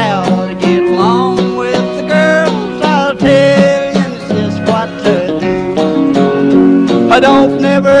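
Country band playing an instrumental break between verses, plucked guitar over a steady rhythm with a wavering lead melody; the singing comes back in right at the end.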